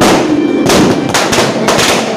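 Firecrackers going off: one loud bang right at the start, then a quick irregular run of five or six sharp cracks in the second half.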